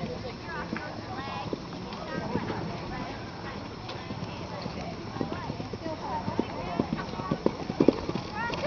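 Hoofbeats of a horse on a sand arena, getting louder and closer as it approaches a jump, with the strongest strikes near the end.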